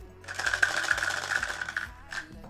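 Two dice rattling fast in a clear shaker cup as it is shaken. The rattle starts about a quarter second in and stops just before the end.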